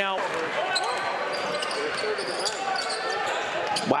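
Basketball being dribbled on a hardwood court, with a crowd murmuring and voices in the gym.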